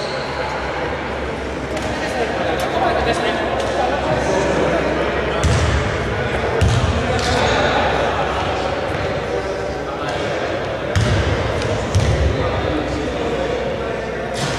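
A basketball bouncing on the indoor court floor: a few thumps about five to seven seconds in and again around eleven to twelve seconds, echoing in a large hall.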